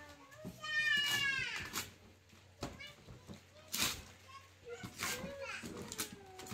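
Young children's excited voices, with a long high-pitched squeal about a second in, followed by short bits of chatter and a few sharp clicks.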